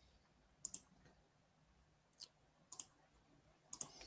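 Four short, sharp computer mouse clicks spread over a few seconds, some in quick pairs, as a screen share is being set up.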